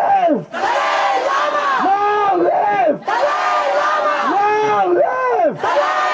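Protest crowd chanting a slogan in unison, led by a man shouting through a microphone and loudspeaker. The chant comes in loud shouted phrases about every two and a half seconds, with short breaks between them.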